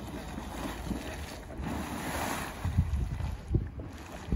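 Small hot-spring vent in a rock cone hissing and spattering as it spouts steam and water, the hiss swelling around the middle. Wind on the microphone adds a few low thumps in the second half.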